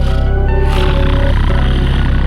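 Instrumental music with a pulsing bass and held tones. A rougher, noisy layer is mixed in from about half a second in.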